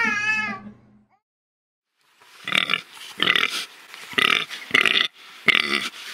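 A baby's laughter ends about a second in. After a short silence, a pig grunts five times in short snorting bursts, less than a second apart.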